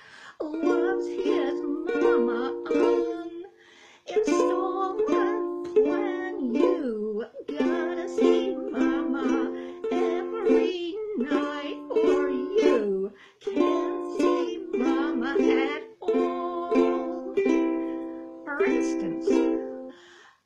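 A woman singing a 1920s popular song while strumming chords on a ukulele, in phrases with short breaks between them.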